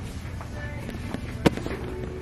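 A single sharp click or knock about one and a half seconds in, over a steady low hum.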